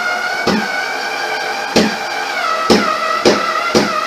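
A power drill's motor whining steadily as it drives a screw into the plastic, its pitch sagging a little under load, with several sharp clicks along the way; the motor winds down and stops right at the end.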